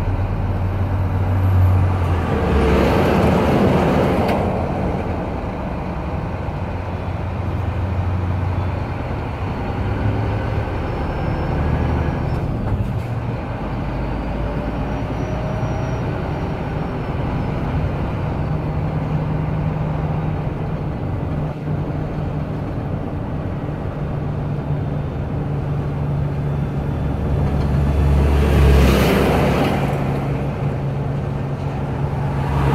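Heavy trucks climbing the mountain road pass close by an open truck-cab window: a rush of engine and tyre noise swells and fades about two to four seconds in, and again near the end. Underneath runs the steady low drone of the truck's own diesel engine as it rolls slowly downhill.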